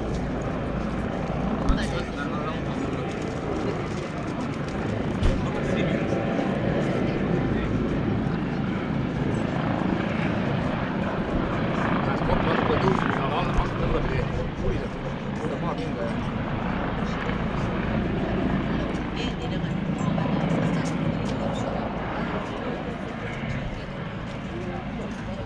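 A helicopter's steady engine and rotor drone, with people talking indistinctly in the background.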